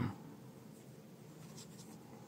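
Faint handling noise of a smartphone being turned in the hands and set down on a cloth, with a couple of light clicks near the end.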